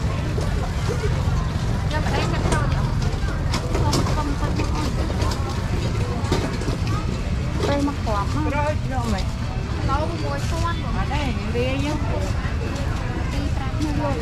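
Busy market ambience: people talking close by over a steady low rumble, with scattered clicks and knocks of handling.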